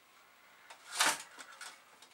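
A brief scrape about a second in as the Amiga 500's keyboard and plastic case are handled by hand, followed by a few light clicks.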